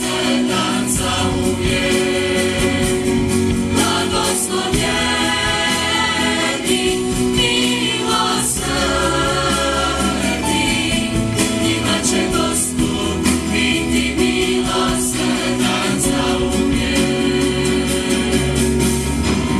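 Mixed choir of young men and women singing a hymn together, steadily and without a break.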